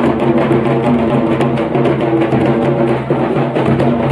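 Hand-played two-headed barrel drum beating a steady dance rhythm, with group singing of a folk dance song over it.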